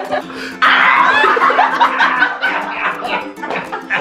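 Several people laughing and exclaiming, jumping suddenly louder a little over half a second in, over background music with held notes.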